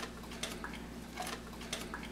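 A few faint, scattered light clicks from a dog's metal collar tags and buckle as she shakes a paw, over a low steady room hum.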